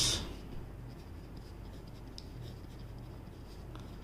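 Pen writing on paper: faint scratching of the tip with a few small ticks as words are written out by hand.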